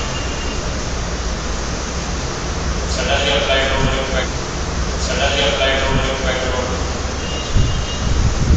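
Two short stretches of a person's voice, about three and five seconds in, over a steady low background hum of room noise.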